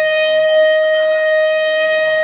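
Electric guitar feedback: one loud, steady high tone held unchanged through an amplifier, with no drums under it.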